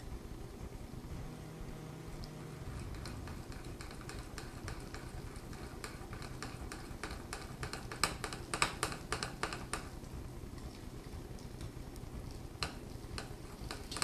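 A spoon stirring thick cake batter in a glass mixing bowl, with irregular clicks and taps of the spoon against the glass, busiest from about six to ten seconds in.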